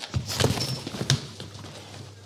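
A high kick and the scuffle it sets off: a quick run of thumps, knocks and scuffing feet over the first second or so, then quieter.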